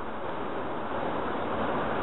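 Steady hiss of background noise with no distinct event in it.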